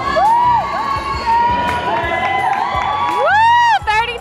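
Audience members whooping and shouting cheers, several overlapping calls that rise and fall in pitch, the loudest a long whoop near the end.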